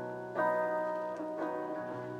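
Acoustic guitar played live, two chords struck about a second apart, each left ringing.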